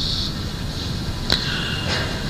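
A pause in a man's talk, filled with the recording's steady low background rumble, and a single sharp click about 1.3 s in.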